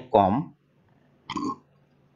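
A man's voice ends a word at the start, then a single brief throat sound from the same speaker about a second and a half in, over a faint steady low hum.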